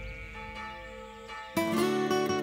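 A church bell's ringing dies away after a single strike. About one and a half seconds in, acoustic guitar music comes in suddenly.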